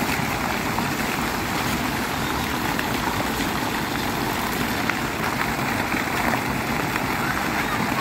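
Public fountain's many water jets splashing steadily into a shallow basin.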